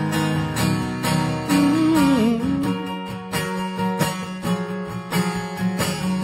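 Two acoustic guitars playing an instrumental passage with no singing: a steady strummed rhythm under picked notes, and one lead note that slides about two seconds in.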